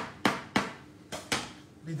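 Metal dough scraper chopping through soft castagnole dough and striking a stainless-steel worktop: about five sharp knocks in quick succession.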